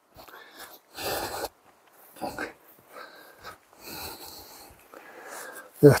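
A man breathing heavily in a string of short breaths close to the microphone, the loudest about a second in; he is out of breath from climbing the steep rock slope.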